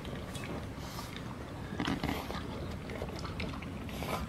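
A French bulldog puppy eating from a metal bowl: faint, irregular chewing and licking with small clicks against the bowl.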